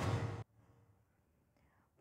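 The tail of a news-bulletin theme jingle, ending abruptly about half a second in, followed by near silence.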